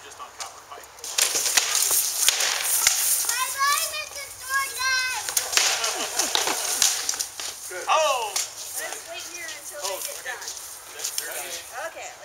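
Armoured sword fight: a rapid flurry of weapon strikes on armour and shield starting about a second in and running for several seconds, mixed with high-pitched shouts and exclamations.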